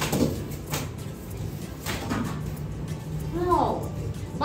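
Children's hands slapping paper word cards down on plastic classroom desks: three sharp slaps in the first two seconds, then a child's short voiced call near the end.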